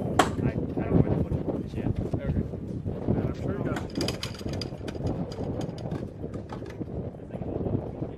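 Wind buffeting the microphone outdoors, with indistinct voices and a run of light clicks and taps near the middle.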